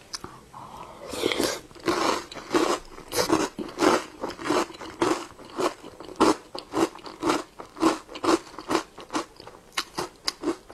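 Close-miked chewing of a mouthful of small dessert pearls, in an even rhythm of about two to three chews a second. A denser stretch comes about a second in as the mouthful is taken.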